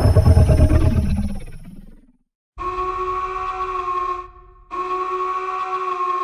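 Film-trailer sound design: a loud booming hit dies away over about two seconds, then after a brief silence come two identical horn-like blasts, each a sustained chord about a second and a half long with a short gap between them.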